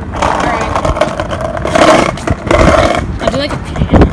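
Skateboard wheels rolling over brick paving, a loud rough noise that swells about two seconds in and again near the end.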